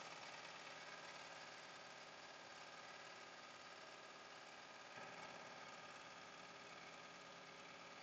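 Near silence: a faint steady mechanical hum, room tone.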